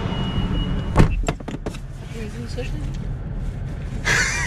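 Low steady hum of a pickup truck idling, heard inside the cab. A high steady tone stops about a second in at a sharp knock, the loudest sound, followed by a few quick clicks.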